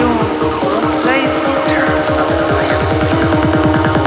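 Psytrance playing: a fast, driving rolling bass line under synth sounds that sweep up and down in pitch.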